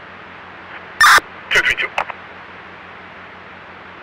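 Police radio scanner traffic: a steady hiss of radio static with a low hum beneath, a loud short burst of noise about a second in, then a voice briefly calling a unit number.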